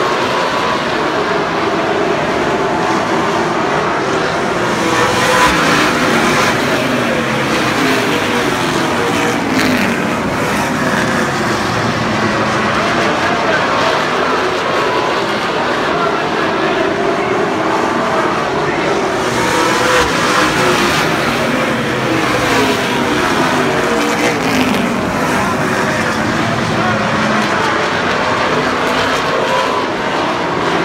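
A field of late model stock cars' V8 engines running together in a pack, making a loud, dense engine note whose pitches bend up and down. It swells as the pack comes closest, about 5 seconds in and again about 20 seconds in.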